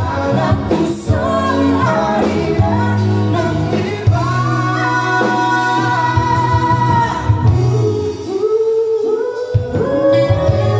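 Live band performing a song with male and female vocals over saxophone, electric guitar, bass and drums. A long held vocal note comes about five seconds in.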